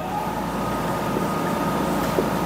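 A steady low rumble with a faint, even high hum over it, slowly growing louder.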